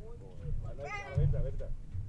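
Indistinct voices of people on a dock, with a high-pitched, wavering child's voice strongest about a second in. Underneath runs a low rumble that swells briefly just after it.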